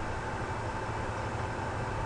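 Steady background hiss with a faint low hum: the room tone and noise floor of a voice-recording microphone.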